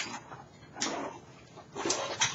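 Three brief, soft rustling and shuffling noises about a second apart, from a person moving about close to the microphone as he settles in front of it.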